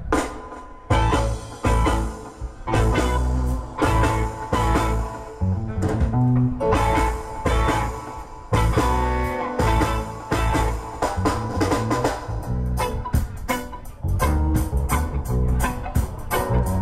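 Reggae band playing live without vocals: electric guitars, bass and drum kit in a choppy rhythm, the full band coming in loudly about a second in.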